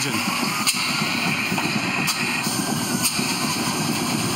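1943 Atlas Imperial marine diesel engine running just after being started, a dense, steady clatter with a few sharper knocks.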